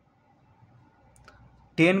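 A single faint click of a ballpoint pen against paper about a second into a near-quiet pause, then a man's voice starts speaking near the end.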